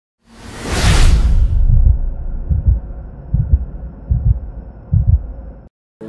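Cinematic intro sound effect: a whoosh in the first second and a half over a deep rumble, then four deep thumps a little under a second apart. It cuts off suddenly just before the end.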